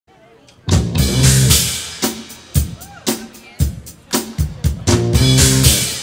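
Live band playing a pop-rock song on stage: drum kit, bass and electric guitar come in together under a second in, with a run of sharp accented hits on the drums.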